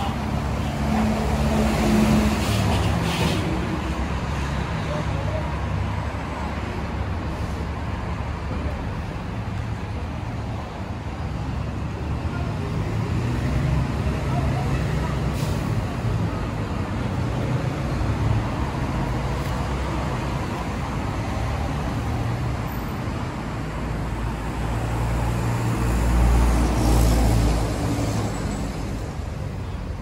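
Steady low rumble of road traffic, swelling louder for a couple of seconds near the end.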